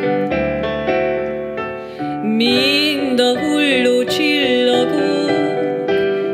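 Digital piano playing a slow accompaniment of held chords. About two seconds in, a singing voice comes in with a gliding, wavering melody over the piano.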